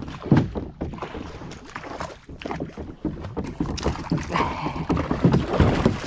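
Mullet jumping around and into a plastic fishing kayak: repeated, irregular splashes and sharp thumps as the fish strike the hull.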